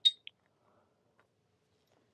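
Near silence: quiet room tone, broken by two short, high clicks in the first third of a second.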